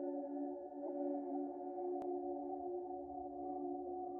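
Ambient music: a steady drone of several sustained, overlapping tones, with a single click about halfway through.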